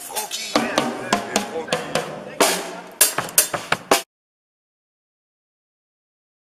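Drum kit being played loosely, with irregular bass drum and snare hits, mixed with voices. It cuts off abruptly about four seconds in.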